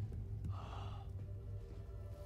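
A person gasps once, short and breathy, about half a second in. Low, steady music drones underneath.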